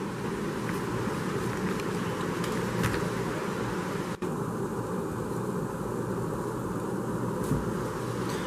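Steady background noise, a mix of low hum and hiss, with a few faint clicks and a brief dropout about four seconds in.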